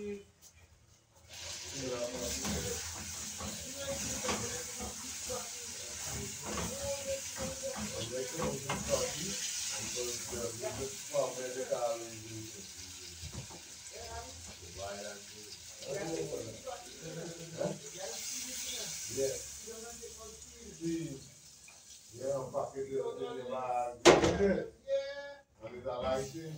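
Indistinct talking over a steady hiss that stops about 21 seconds in, with a sharp knock near the end.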